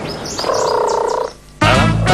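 A held, pitched vocal sound lasts about a second and then stops. About a second and a half in, upbeat children's-TV transition music starts abruptly.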